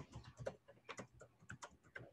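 Faint typing on a computer keyboard: about a dozen quick, irregular key clicks as a short phrase is typed.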